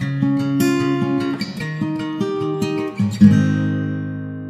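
Acoustic guitar music: a run of single plucked notes, then a strummed chord about three seconds in that rings on and slowly fades.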